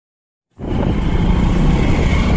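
A car engine sound effect that starts suddenly about half a second in, a loud, steady, low engine note.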